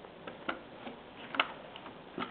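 A few faint, light clicks of small plastic model parts being handled, the clearest two about a second apart.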